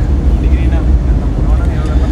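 A loud, steady low rumble with faint voices in the background.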